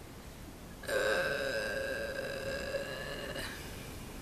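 A long burp, starting about a second in and held for about two and a half seconds.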